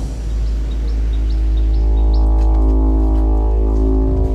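Background score of a TV crime drama: a deep, steady bass drone with sustained chord tones swelling in about a second and a half in, and a few short high chirps in the first two seconds.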